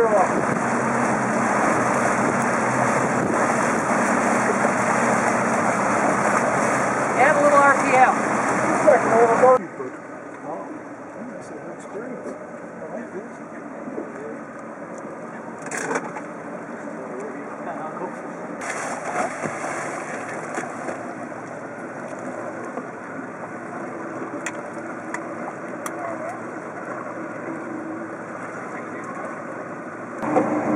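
Outboard motorboat running at speed: a loud, steady rush of wind, water and engine noise. About ten seconds in it cuts off suddenly to a much quieter, low engine hum with the boats idling on calm water.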